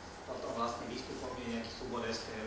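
Speech only: a man talking.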